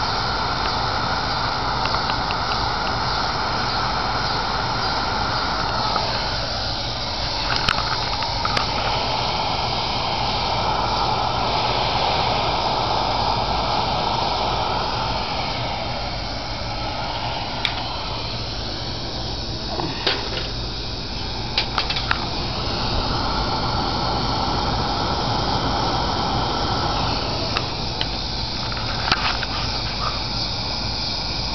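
Wenzel pressure lantern burning with a steady hiss from its pressurised burner, with a few faint clicks now and then.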